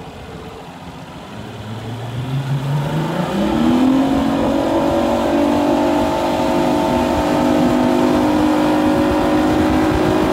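Mercury 225 outboard motor accelerating a bass boat onto plane: the engine note climbs for the first three or four seconds, then holds steady at cruising speed. Water and wind rush beneath it.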